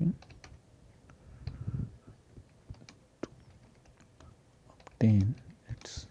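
Typing on a computer keyboard: irregular single key clicks at an uneven pace as a line of text is typed out.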